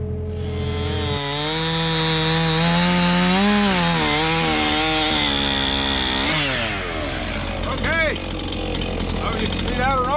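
A mini excavator's engine runs steadily for about the first second, then a gas chainsaw cuts through a cherry log, its pitch wavering and climbing under load for about five seconds. It then drops away as the throttle is let off, and the saw runs on more quietly.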